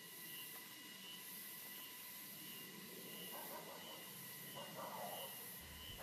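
Faint steady hiss with faint high tones pulsing on and off at an even pace.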